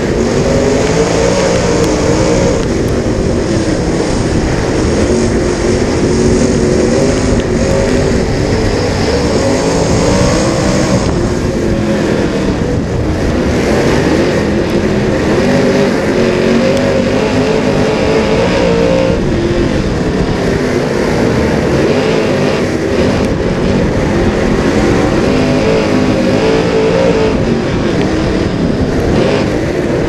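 Dirt Super Late Model's V8 racing engine heard from inside the cockpit, running hard under racing load, its pitch rising and falling every few seconds as the throttle comes on and off through the turns.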